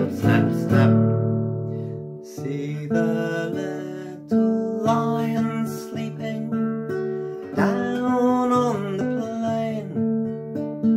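Classical guitar strummed and picked in an instrumental passage, chords struck every second or two and left to ring and fade.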